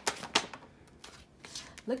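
A deck of tarot cards being shuffled by hand: a quick run of sharp card snaps in the first half second, then softer handling of the cards.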